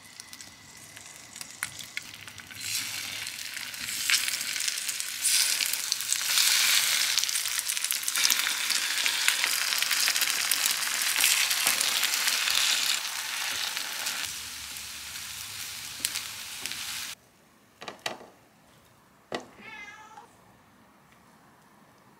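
Egg-dipped gimbap slices frying in oil in a pan: a steady sizzle that builds a few seconds in, with light chopstick taps as the pieces are turned, then cuts off suddenly. After it come a few light taps and a short meow from a cat.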